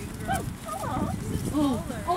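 German shorthaired pointer puppies giving several short, high yips and whines as they play and jump up at a person.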